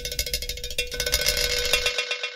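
Background electronic music in a sparse percussive break: rapid, evenly spaced clicks over a steady held tone.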